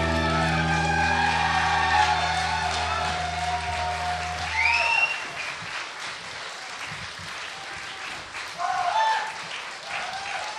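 The band's last held low chord rings on and stops about halfway through, under a live audience applauding and cheering, with shouts and whistles rising out of the applause near the middle and near the end.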